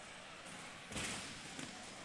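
A single thud about a second in over the faint, steady background noise of a large hall.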